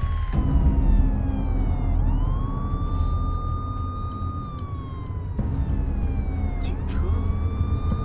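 Police vehicle siren wailing: a quick rise to a held high pitch, then a long slow fall, twice over, over the low steady rumble of a bus engine and road noise heard from inside the bus.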